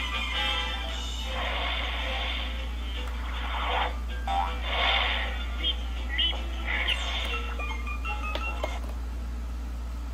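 DVD menu music with cartoon-style sound effects, played through a portable DVD player's small built-in speaker and sounding thin, with a steady low hum underneath.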